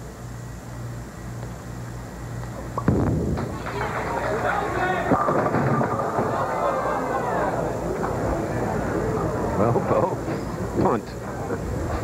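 A bowling ball crashes into the pins about three seconds in, followed by a sustained noisy crowd reaction as a 4-9 split is left standing.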